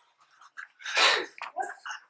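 A person's short, breathy vocal burst about a second in, followed by a few fainter breath sounds.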